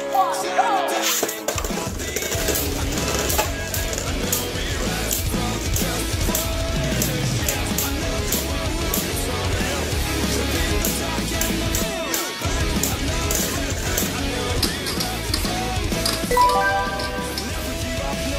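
Loud background music plays over Beyblade Burst spinning tops whirring and clinking against each other on a plastic stadium floor.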